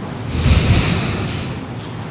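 Air rushing across a microphone, a blowing hiss that swells with a low rumble about half a second in and fades within a second.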